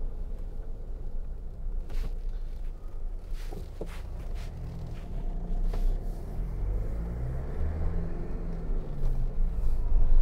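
Cabin noise of a 2009 Jeep Wrangler's 2.8 CRD four-cylinder turbodiesel on the move: a steady low engine and road rumble. A few light clicks and knocks come through it, and in the second half the engine note steps up and down as the manual gearbox is shifted.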